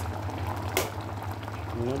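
A pot of bone broth simmering on low heat, bubbling steadily over a low hum, with one sharp click about three-quarters of a second in.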